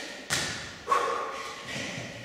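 Thuds of feet and hands landing on a gym floor during bodyweight burpees, with sharp impacts about a third of a second in and again about a second in. The second impact is the loudest and leaves a brief ring.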